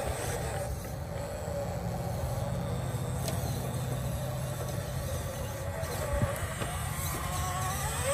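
A 1/10-scale RC rock crawler's electric motor and drivetrain whining faintly as it creeps up a boulder, the pitch wavering with the throttle, over a steady low rumble. There are a few faint clicks of the tyres on the rock.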